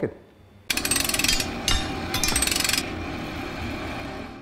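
Title-card sound effect: a rapid mechanical rattle like a pneumatic power tool, starting suddenly about a second in, in two bursts of about a second each, then fading out over the last second or so.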